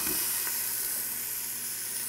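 Sliced onion sizzling as it hits hot olive oil in an Instant Pot's stainless steel inner pot on sauté high. The sizzle starts suddenly and slowly dies down.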